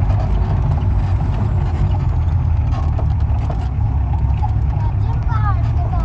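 Jeep engine running steadily, heard from inside the cab while driving a rough mountain dirt track, with scattered knocks and rattles from the body over the bumps.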